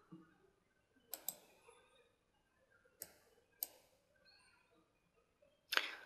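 Faint computer mouse clicks: a quick double click about a second in, then two single clicks at about three and three and a half seconds.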